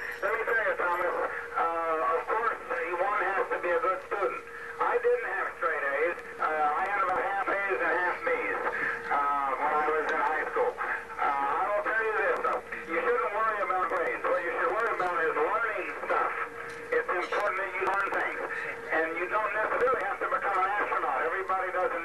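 An astronaut's voice received over ham radio from the Mir space station: narrow-band and garbled, with a steady tone running underneath the speech.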